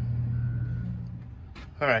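Steady low drone of an idling engine in the background, easing off after about a second; a man's voice comes in near the end.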